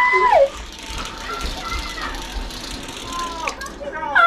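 A high-pitched squeal from a person, rising and held, that drops away and stops about half a second in; after it, quieter excited voices in the room.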